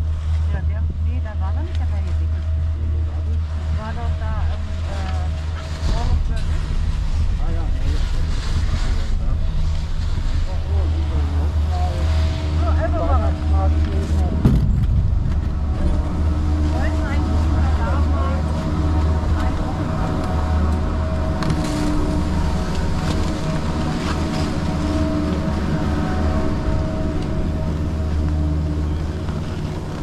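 Deep steady rumble of a Doppelmayr six-seat detachable chairlift on its approach to the mountain station, joined about twelve seconds in by the steady hum of the station machinery as the chair runs through the station. There is a single clunk about halfway through.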